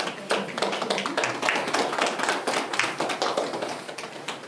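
A small group of people clapping their hands in applause, a dense run of irregular claps.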